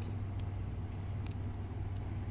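Steady low background hum, with a few faint light clicks from a metal nailer piston being handled.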